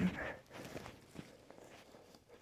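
Footsteps crunching through dry grass and dead twigs on forest ground, irregular walking steps. A man's voice trails off at the very start.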